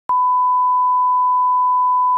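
Television line-up test tone played with SMPTE colour bars: a single steady, pure 1 kHz beep that starts with a brief click just after the start and holds at an even pitch.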